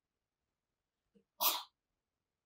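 A single short, breathy burst of noise from a man's nose or mouth about one and a half seconds in, like a sniff or a small cough, in an otherwise near-silent room.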